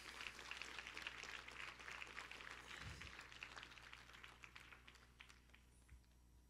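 Near silence with faint crackly rustling from handling at the pulpit, picked up by a handheld microphone. It dies away about five seconds in.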